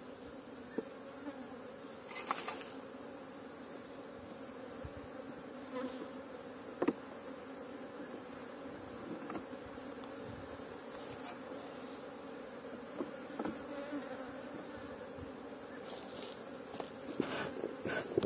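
Honey bees buzzing around an open wooden hive, a steady low hum, with a few brief knocks.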